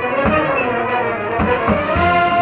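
Marching band playing, brass holding chords over the percussion, with a few low drum hits.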